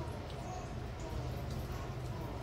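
Steady low background hum, with only a few faint brief sounds above it.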